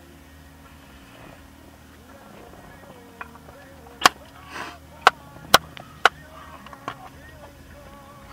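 A handful of sharp clicks and taps, about five in three seconds with a brief rustle among them, over a low steady hum inside a car.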